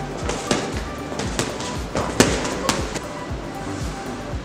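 Boxing gloves punching focus mitts: a series of about eight sharp smacks at an uneven pace, the loudest a little after two seconds in.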